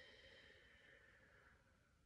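A faint, slow exhale of a deliberate breath, lasting most of two seconds and sinking slightly in pitch before fading out near the end.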